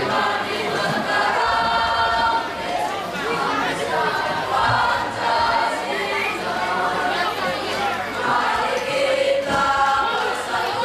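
A boys' choir singing in chorus, a school march song, with sustained sung notes and phrases breaking every second or two.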